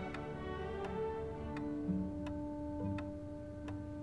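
A clock ticking slowly and evenly, about three ticks every two seconds, over soft string music.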